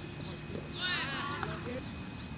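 A single high, shouted call from a player on the field, about a second in, falling in pitch and lasting under a second, over a steady low outdoor hum.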